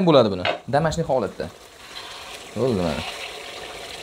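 Marinated chicken breast pieces sizzling as they fry in an aluminium pot, the sizzle heard most clearly in the second half between short bits of a man's speech.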